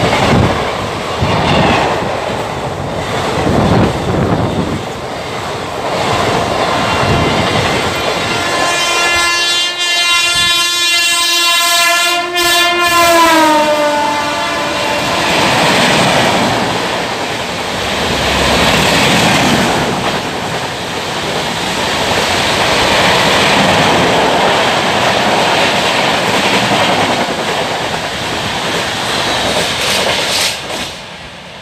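Indian express trains running through a station at speed, the coaches rushing past with a rhythmic clatter of wheels over rail joints. About nine seconds in, a locomotive horn sounds for some five seconds, holding one chord and then sliding down in pitch as it passes. The rush of a passing rake follows.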